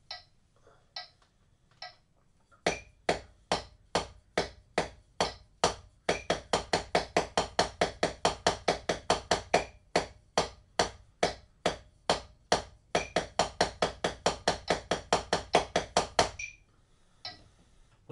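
Drumsticks on a rubber practice pad playing a double stroke roll (RRLL): evenly spaced taps in pairs, alternating a bar of slower doubles with a bar twice as fast, at a steady tempo. A few faint taps come first, the playing starts a few seconds in, and it stops shortly before the end.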